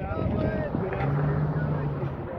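A car driving past, with its engine and tyre noise and a steady low hum in the second half, and wind buffeting the microphone.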